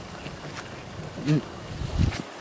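An insect buzzing close by, with a man's short "hmm" a little past halfway and a low thump near the end.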